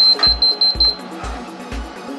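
Canon imageCLASS LBP722Cdw laser printer's control panel beeping, about six short, rapid, high beeps in the first second. It is the panel's warning that Direct Connection is restricted. Background music with a steady beat plays under it.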